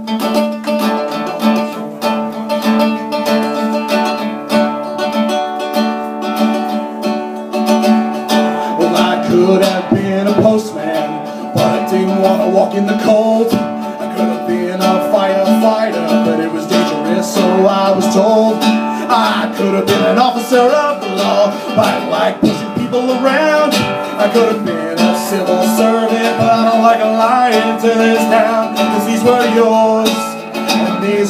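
Acoustic guitar strummed steadily, opening a solo acoustic song. From about nine seconds in, a man's voice sings over the chords.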